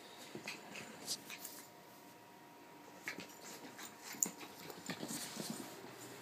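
Pembroke Welsh Corgi puppy at play: scattered scuffles and short, sharp sounds as she scrambles about, the sharpest one about four seconds in.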